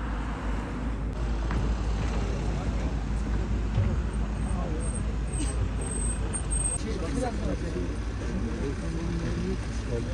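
Cars and vans driving slowly past at close range over a steady low rumble, with people talking nearby in the second half.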